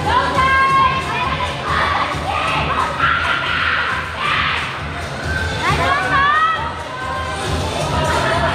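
Children shouting and cheering as a crowd, with high rising yells near the start and again about six seconds in, over the steady low beat of dance music.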